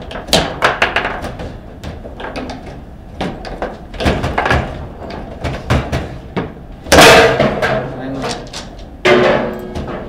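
Foosball play: the ball clacking off the plastic players and the table sides, with the rods knocking. About seven seconds in comes the loudest hit, a hard shot ringing in the table as the goal is scored, and a second loud bang follows near the end.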